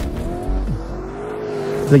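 Lamborghini Urus twin-turbo V8 running under throttle, its pitch rising slowly as it accelerates, with a deep low rumble that sets in about half a second in.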